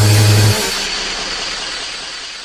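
End of a breakcore track. A low held bass note cuts off about half a second in, leaving a noisy tail that fades away.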